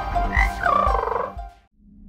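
Cartoon frog croaking: a warbling, pitched croak that bends up and then down, over a few low thuds. It fades out about a second and a half in.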